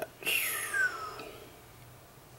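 A man's breathy, whispered exclamation lasting about a second, falling in pitch, then faint room tone.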